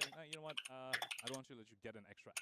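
Computer keyboard typing: quick, irregular key clicks under a faint voice.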